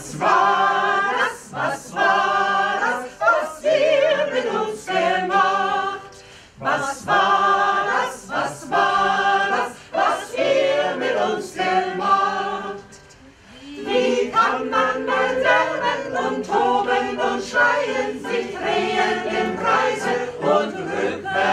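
A mixed choir of men and women singing a song in German, its phrases broken by two short pauses about six and thirteen seconds in.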